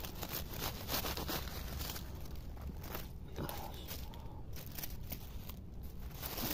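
Dry leaves and grass stems rustling and crackling as fingers dig around a thistle oyster mushroom and pull it from the ground.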